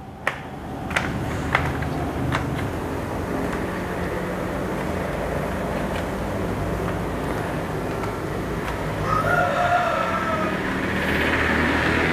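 Steady low motor rumble, like a vehicle engine running nearby, with a few light clicks in the first couple of seconds and a brief pitched sound about nine seconds in.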